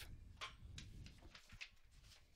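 Near silence: a faint low background hum with a few soft ticks.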